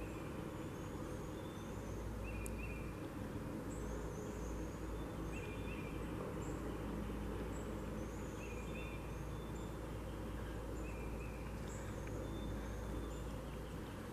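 Steady outdoor background noise in woodland, with a faint, short high chirp repeating every couple of seconds.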